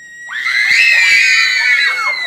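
Several violins playing together in a loud, high, wavering squeal with sliding pitches, starting a moment in and held for well over a second.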